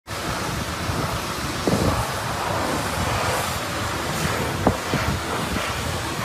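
Wind buffeting the microphone, a steady rumbling hiss, with a couple of faint knocks, one about two seconds in and another later on.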